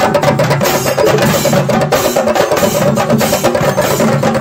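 Chenda drums of a chenda melam ensemble beaten rapidly with sticks, a dense, fast run of strokes at a steady loud level, with a sustained pitched melody line underneath.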